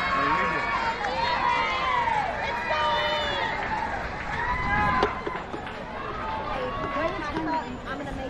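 Several spectators' voices calling and shouting over one another, with one sharp knock about five seconds in.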